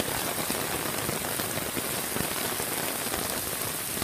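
Heavy, steady downpour of rain pouring onto flooded ground and standing water.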